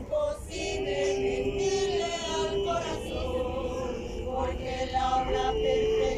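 A congregation of many voices singing a hymn together, holding long, drawn-out notes.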